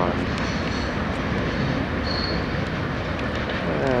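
Mixed freight train's cars rolling along the rails, a steady rumble of wheels on track, with a brief faint high wheel squeal about two seconds in.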